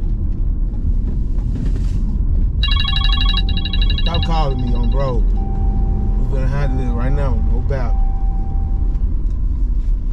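Road noise in a moving car's cabin. About two and a half seconds in, a phone rings for a couple of seconds, then a voice makes several drawn-out sounds that rise and fall in pitch.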